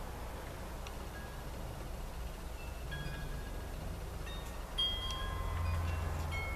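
Soft ringing chime notes at several different pitches, scattered and each held about a second, over a low steady hum.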